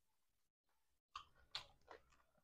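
Close-miked chewing: near silence for about a second, then three short wet mouth smacks in quick succession.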